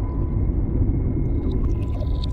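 Deep underwater rumble from a film's sound design, heavy and steady, with a thin steady tone above it and a few faint ticks near the end.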